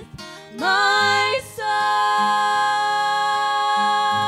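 Women singing a worship song with acoustic guitar. After a short breath at the start, the voice slides up into a long held note, breaks off briefly about a second and a half in, then holds a steady note over plucked guitar chords.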